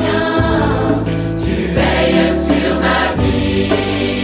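A French-language Christian worship song: voices singing in choir over instrumental accompaniment.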